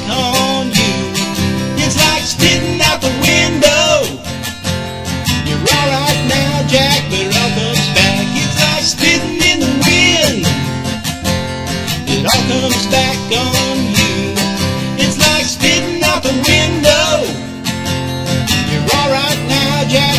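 Acoustic guitar strummed steadily, playing an instrumental passage of a song.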